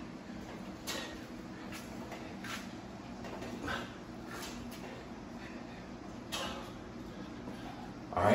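A man's short, sharp exhalations, about six in all, roughly once a second, as he pushes through push-ups. A faint steady hum runs underneath.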